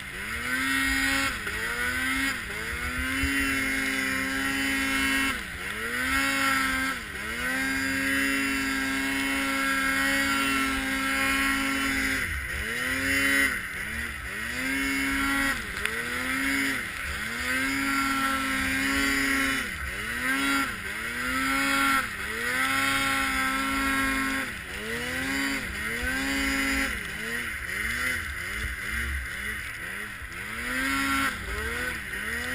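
Arctic Cat M8 snowmobile's two-stroke engine revving up and dropping back over and over as it is ridden through deep snow, now and then held steady for a few seconds, with quick short throttle blips near the end.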